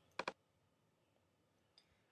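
A computer mouse button clicked twice in quick succession, with a faint tick near the end.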